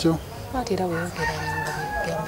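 A rooster crowing, ending in a long, steady held note.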